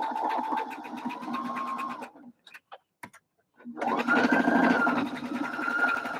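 Electric sewing machine stitching a seam in two runs: a motor whine with rapid needle strokes for about two seconds, a short pause, then a second, higher-pitched and faster run that stops near the end.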